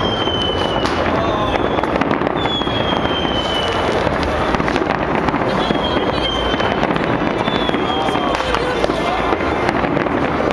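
A big fireworks display: a steady barrage of bangs and crackle, with several whistling rockets whose whistles fall in pitch over about a second each. Crowd voices mix in underneath.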